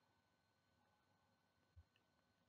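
Near silence: room tone in a pause between sentences of speech.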